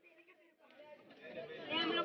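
Several people's voices chattering together, faint at first and growing louder toward the end.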